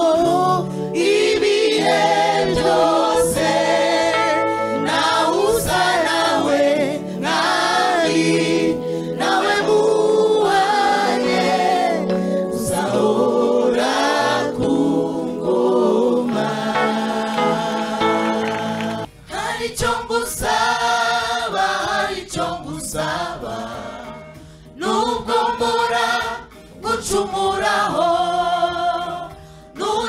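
Gospel choir singing with amplified accompaniment, many voices together. About two-thirds of the way through the low backing drops out, and the singing carries on in shorter phrases with brief dips between them.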